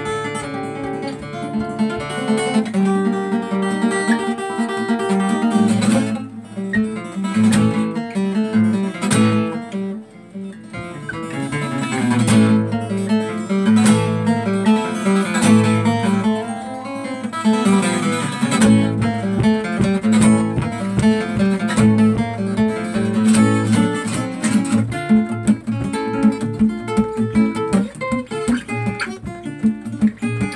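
Solo acoustic guitar played live, mixing picked melody notes with strummed chords. The playing thins out briefly about ten seconds in, then builds again.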